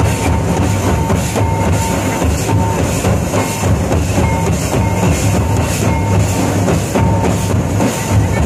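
A group of Santali barrel drums (tumdak') beaten together by hand in a fast, steady dance rhythm, with a short high note repeating over the beat.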